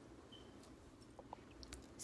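Near silence: room tone with a few faint small clicks in the second half.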